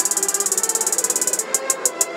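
Outro of a hip hop beat with the bass and vocals gone: a fast hi-hat roll over a faint sustained synth, the roll thinning to a sparser tick pattern about one and a half seconds in.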